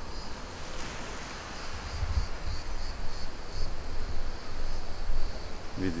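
Insects buzzing in the surrounding vegetation: a faint high buzz pulsing about twice a second, over a low steady rumble.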